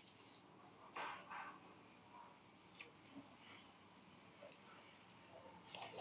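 Near silence: faint room tone with a thin, steady high-pitched tone held for about three seconds in the middle, and a soft click about a second in.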